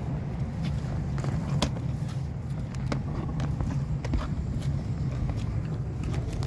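Propane roofing torch burning with a steady low roar, with a few light clicks and crackles over it.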